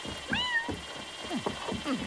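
A kitten meowing: one high meow that rises and falls about half a second in, then a quick string of short, lower mews.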